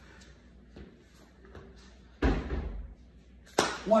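A heavy thud on a wooden floor about two seconds in as a person drops into push-up position, then a sharp smack near the end from the first clap push-up, the hands clapping and landing on the floor.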